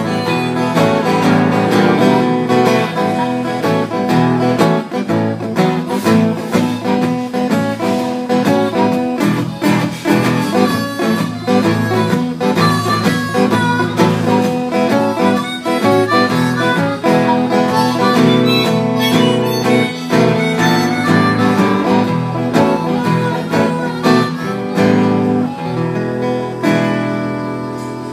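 Instrumental blues break: an acoustic guitar strumming a steady rhythm while a harmonica plays the lead over it, easing off near the end.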